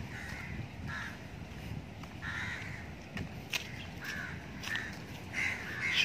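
A bird giving short, harsh calls about once a second, over a low steady rumble.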